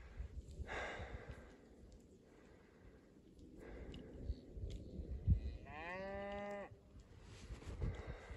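A cow moos once, a call about a second long that rises in pitch at the start and then holds steady, about three-quarters of the way in.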